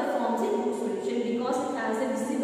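Speech only: a woman lecturing, her voice running on without pauses.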